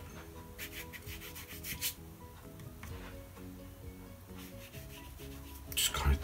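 Flat watercolour brush dragged across textured watercolour paper in a few short scrubbing strokes, the loudest near the end, over soft background music.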